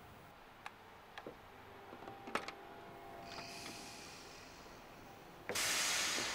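A few light clicks and knocks from metal door handles as a rod is pushed through them to bar a pair of glass doors, then a sudden much louder noise about five and a half seconds in that fades away.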